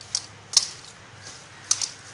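Bangles on a wrist clinking as a hand mixes mashed boiled potato with spices: four sharp clicks, the loudest about half a second in and a quick pair near the end.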